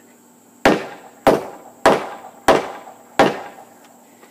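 Framing hammer striking a 2x8 wooden floor joist five times, sharp evenly spaced blows a little under two a second, knocking the joist tight to close a gap at its joint.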